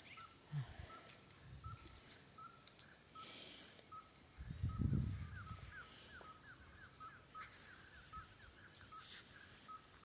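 A bird calling with short, evenly repeated chirps, breaking into a quick run of falling notes in the second half. A low rumble about halfway through is the loudest moment.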